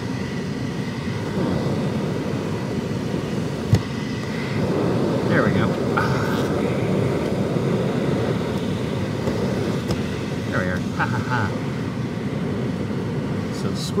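Hands working the plastic retaining tabs of a car's cabin air filter housing, with one sharp plastic click a little under four seconds in. A steady low whooshing hum runs underneath and grows slightly louder about halfway through.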